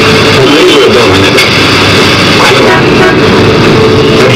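Loud, overloaded street din from a crowd and traffic, with a wavering, drawn-out singing or chanting voice in the first second or so.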